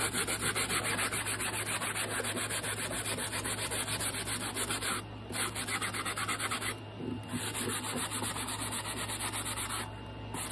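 Sanding block rubbed in quick back-and-forth strokes along the cut edge of a hardcover book's cover board, smoothing off the jagged bits left where the spine was cut away. The strokes stop briefly about five seconds in and again about seven seconds in.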